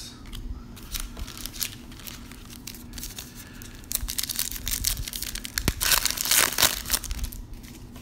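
A foil wrapper of a 2016 Panini Diamond Kings baseball card pack being torn open and crinkled by hand. The crackling rustles build, and are loudest in the second half.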